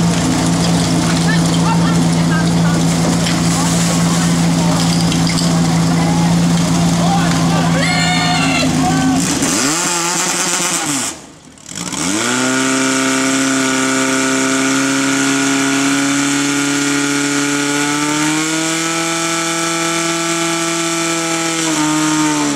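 Portable fire pump engine running at a steady idle with people shouting over it. About ten seconds in its pitch swoops down and up as it is revved, and it briefly drops away. It then runs high and steady under load, pumping water through the hoses, and climbs a step higher near the end.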